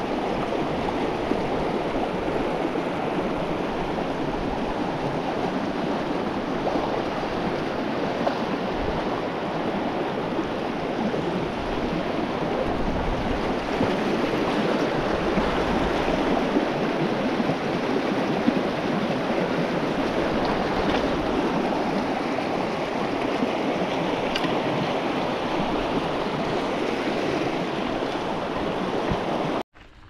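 A fast mountain river rushing over rocks and through white-water riffles: a steady, unbroken rush of water that cuts off abruptly near the end.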